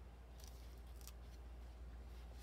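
Faint crackle and rustle of a paper sticker being peeled off its backing sheet, a few soft ticks about half a second and a second in.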